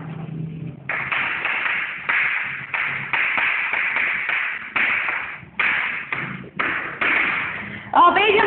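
Chalk writing on a chalkboard: a run of scratchy strokes with short pauses between them, starting about a second in.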